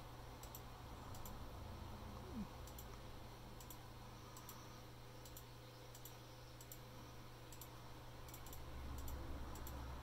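Faint, irregular computer mouse clicks, roughly once a second, over a steady low hum.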